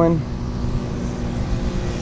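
Steady low engine hum of a riding lawn mower working across the field, under a rumble of wind on the microphone.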